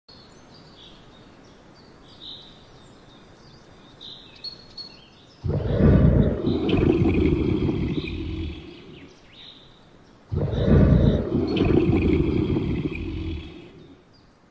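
Adult male lion roaring twice, two long, loud, deep calls about five seconds apart, each lasting some three seconds. Birds chirp faintly before the first roar.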